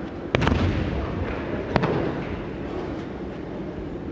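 A thrown aikido partner's body landing on tatami mats in a breakfall: a sharp slap and heavy thud about a third of a second in, then a second sharp slap about a second and a half later.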